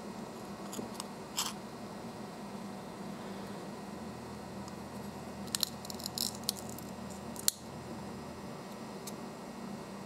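A lump of synthetic stone made of nutmeg fused with glass is scraped against a glass plate in a scratch-hardness test. It gives a few faint, short scratches and clicks, with a cluster of them about five and a half to seven and a half seconds in, over a steady low hum. The stone hardly bites into the glass.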